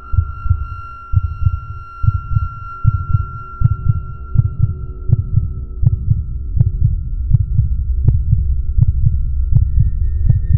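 Suspense sound design: a rapid low throbbing pulse like a racing heartbeat under a steady high drone, with a sharp tick about every three-quarters of a second from about three seconds in, growing louder.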